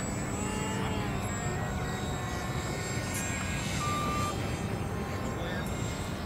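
A steady, low, engine-like drone, with faint voices and a short high tone about four seconds in.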